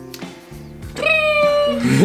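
A single drawn-out cat meow about a second in, lasting under a second and held at a steady pitch, over steady background music.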